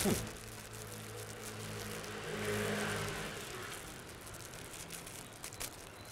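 A car driving past on the street, its noise swelling to a peak around the middle and then fading, over a low steady hum.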